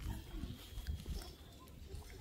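A person weeping aloud in short, broken sobs.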